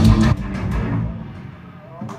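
Live heavy metal band ending a song: electric guitars and bass ring out on a last chord and fade away, with a few sharp drum hits in the first second.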